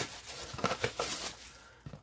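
Clear plastic bag crinkling and rustling as it is pulled off a stainless steel dish and its plastic lid, with a few small clicks of handled plastic; it dies away near the end.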